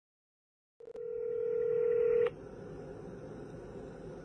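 Telephone ringing tone on a recorded outgoing call: one steady tone about a second and a half long that cuts off suddenly. The faint hiss of the open phone line follows.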